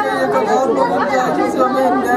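Speech: a man talking in Hindi.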